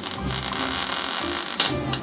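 Wire-feed (MIG) welder arc on thin sheet steel: a steady, loud crackling buzz that stops shortly before the end, with a few sharp crackles as it stops.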